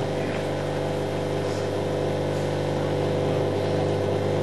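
A steady low mechanical hum, like a running motor, with many even overtones that do not change in pitch or level.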